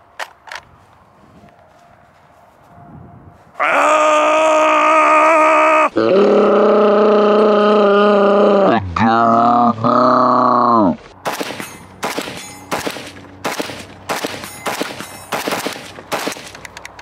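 A man's long, loud wordless yell, held in three stretches. About eleven seconds in it gives way to rapid semi-automatic fire from a Zastava M90 rifle in .223, several shots a second.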